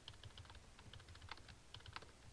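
Faint, rapid taps on computer keyboard keys, several a second: Shift and the left arrow key pressed over and over to step the audio selection back.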